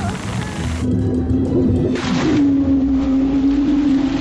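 Cartoon soundtrack music with a long held low note, and a brief swish about halfway through.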